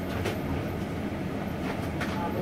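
Gas stove burner running under a pan, a steady low rumble with a few faint clicks.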